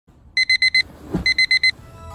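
Electronic alarm beeping: two bursts of four quick, high-pitched beeps with a short gap between them, the pattern of a digital wake-up alarm.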